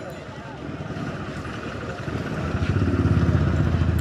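Motorcycle engine running close by, getting steadily louder through the second half.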